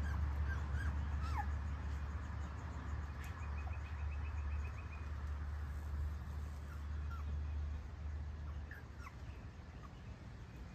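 Porch ambience: a steady low rumble that fades away near the end, with a few short high squeaks and a quick chirping trill about three seconds in.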